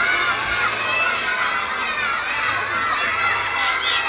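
A large crowd of children shouting together in unison, many voices at once at a steady level, answering a greeting called from the stage.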